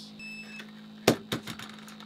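A single short electronic beep, then a loud sharp click about a second in, followed by a few softer clicks, over a steady low hum.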